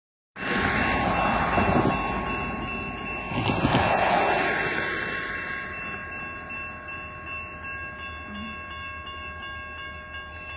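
Railroad crossing signal bell ringing steadily as the crossing activates. A loud rushing noise fills the first few seconds and fades away.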